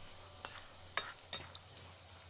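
Wooden spatula stirring sliced ginger through sizzling sugar syrup in a wide pan, with three sharp clicks as it knocks against the pan.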